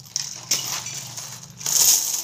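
Rupiah coins jingling and clinking as they pour out of a plastic piggy bank onto a heap of coins on the floor, loudest near the end.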